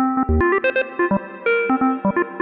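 Software modular synth sequence: Dark Energy complex-oscillator voices in VCV Rack, stepped by the Impromptu Phrase-Seq-32 sequencer, play a quick melody of short, plucky notes. The notes come from a chain of probability-generated phrases pasted into the sequencer.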